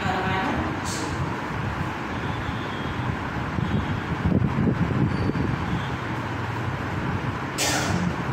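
Steady low rumbling noise, swelling louder about four seconds in; a woman's voice comes back near the end.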